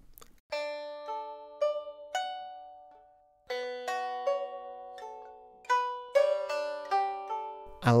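Sampled pipa (Chinese lute) played from a keyboard: a short phrase of plucked notes that rings out and dies away about three seconds in, then a second phrase of overlapping plucked notes and chords.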